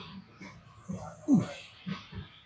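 A man grunting with effort during a pull-up: one short groan, falling in pitch, a little over a second in, with sharp breaths around it.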